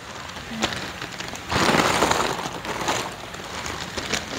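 Plastic packaging bags crinkling and rustling as caramel popcorn is bagged by hand, loudest for about a second and a half in the middle.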